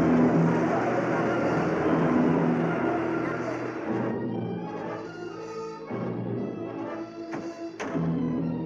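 Dramatic orchestral film score with brass and timpani. Over the first half a loud, rough rushing noise from the car skidding on its shot-out front tire fades away about four seconds in.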